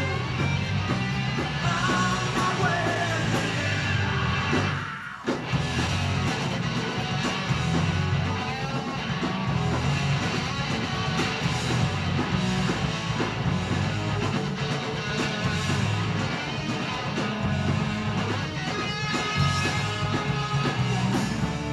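Live indie rock band playing, with electric guitars, bass guitar and drums, from an audience recording of a 1980s club show. The sound dips briefly about five seconds in.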